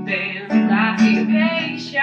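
A woman singing a ballad melody over acoustic guitar accompaniment, with a new sung phrase starting about half a second in.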